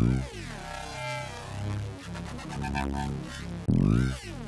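Kilohearts Phase Plant software synthesizer playing an aggressive electronic bass line with its eight-voice unison, detuned and spread, switched back on, giving a thick, heavily moving, phasing sound over a deep low end. It opens with falling pitch sweeps, and a new hit comes in near the end.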